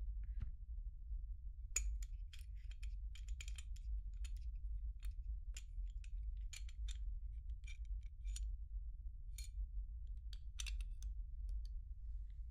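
Parts of a field-stripped pistol clicking and clinking as gloved hands handle them and set them down on a ribbed mat: irregular sharp clicks, starting about two seconds in, over a steady low hum.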